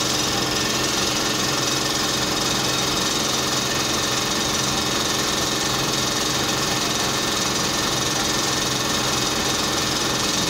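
A steady mechanical hum, like a motor running at an unchanging speed, with a low drone underneath.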